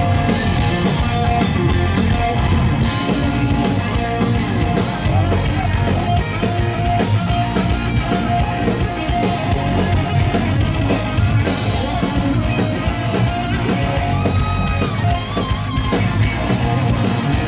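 Live thrash metal band playing loud and without a break: distorted electric guitars over bass and a steady drum beat, heard through the venue's PA from the crowd.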